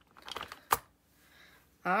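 Light plastic clicks and taps from handling a clear plastic diamond-painting drill storage case and its small containers, with one sharper click just under a second in.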